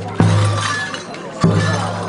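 Large double-headed drum beaten with a stick, two strikes about a second and a quarter apart, each leaving a long low boom, amid the clatter of festival music.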